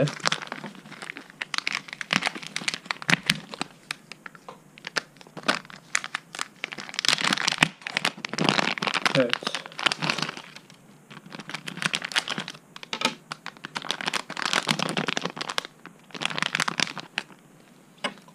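Hands crinkling and rustling plastic packaging film and a metallized anti-static bag while unpacking a small electronic part, in irregular bursts with short pauses between them.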